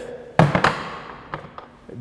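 A wooden pole thrust knocking against a plastic lawn chair as the chair sets it aside: two sharp knocks about a quarter second apart, then a few lighter taps.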